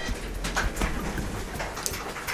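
Hand-cranked mobile archive shelving rolling along its floor rails: a low rumble with many quick clicks and knocks.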